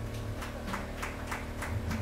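A few handclaps of light applause, about three a second, just after an acoustic guitar piece has ended.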